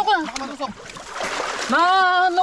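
Muddy creek water splashing as hands grope in holes under the bank for fish, between calls: an exclamation at the start and a long, drawn-out call near the end.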